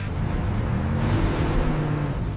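Cartoon monster-truck engines running, a steady rumble whose pitch rises a little about a second in, as the trucks drive on.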